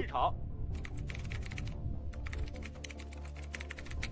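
Fast typing on a computer keyboard: two runs of rapid keystrokes with a short break near the middle, over soft background music.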